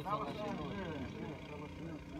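A man speaking Greek for about a second, then fading to a steady low rumble of background noise.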